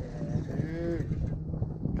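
A man's drawn-out wordless exclamation, a long 'ohh' that rises and falls in pitch for about a second, as a bass is hooked and pulling. Underneath runs a steady low hum with wind noise.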